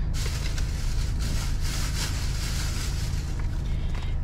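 Rustling and handling of clothes and packaging as items are rummaged through and a packet of tights is picked up, over a steady low rumble inside a car's cabin.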